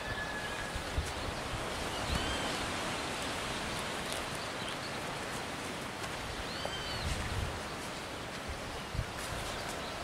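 Outdoor ambience: a steady rustling, windy hiss, with two short bird chirps, one about two seconds in and one near seven seconds.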